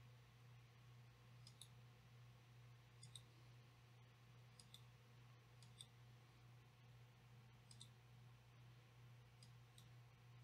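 Faint computer mouse clicks every second or two, some in quick pairs like double-clicks, over a low steady hum; otherwise near silence.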